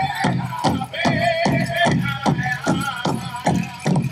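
A powwow drum group singing the grand entry song: high, wavering voices in unison over a steady, even beat on a big drum.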